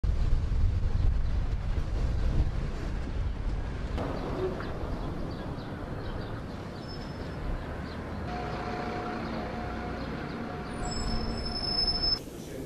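Outdoor location ambience: a steady low rumble that changes abruptly about four seconds in and again about eight seconds in, where a steady hum with a few held tones joins it.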